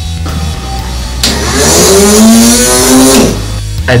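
A revving motor sound effect marking the motor starting to spin: a loud rushing whine whose pitch climbs, holds and falls over about two seconds, starting just over a second in. Background music plays throughout.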